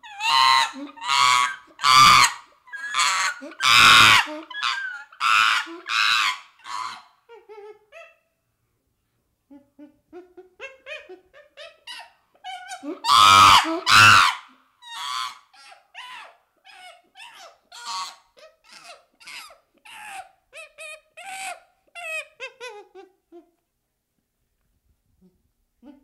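Chimpanzee calling: a run of loud, hoarse, pitched calls about two a second, a short pause, a loudest burst a little past the middle, then a run of shorter calls that fall in pitch toward the end.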